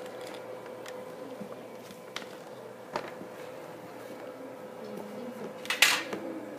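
Classroom room tone with a steady faint hum and a few faint clicks. A brief, louder noise comes just before the end.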